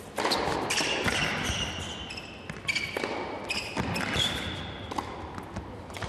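Tennis rally on an indoor hard court: several sharp racket strikes on the ball, with sneakers squeaking on the court in high drawn-out squeals between them.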